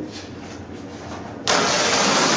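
Quiet room hiss, then about one and a half seconds in a large sheet of flip-chart paper is swung back over the top of the pad: a sudden, loud, steady paper rustle.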